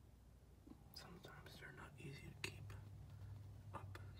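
Faint whispered speech, starting about a second in.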